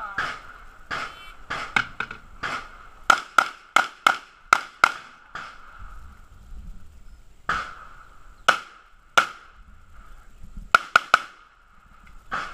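Handgun shots fired in a rapid course of fire, mostly in quick pairs (double taps), with short gaps as the shooter moves between targets, and a closing burst of three shots near the end.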